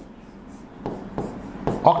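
Pen strokes scratching on a writing board as a diagram is drawn: a few short strokes in the second half, after a quiet start.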